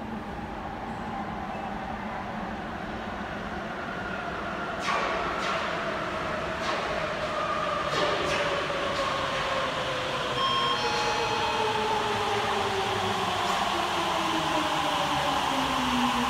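Sapporo Municipal Subway Toho Line rubber-tyred train pulling into an underground station, slowing as it comes. Its whine falls steadily in pitch and grows louder as the train nears. A few sharp knocks come about five to eight seconds in.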